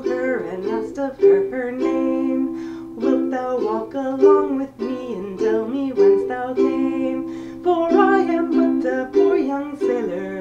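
Ukulele strummed as accompaniment to a woman singing a folk ballad, with several long held notes in the vocal line.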